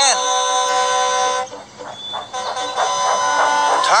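Diesel engine horn sounding twice: a long steady blast, a short break, then a second long blast, over background music.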